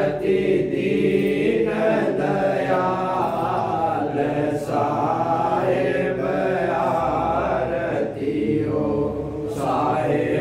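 Voices chanting a devotional aarti hymn in unison, in long held notes with short breaks between lines.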